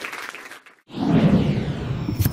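Audience applause fading, cut off about three-quarters of a second in. Then a swelling whoosh sound effect for an animated logo starts.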